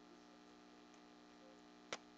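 Near silence: a faint, steady electrical hum, with one short click near the end.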